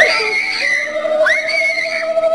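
High-pitched wailing cries from people caught up in an ecstatic charismatic meeting: a long cry at the start and a shorter rising-and-falling one about a second later, over another voice holding a lower note.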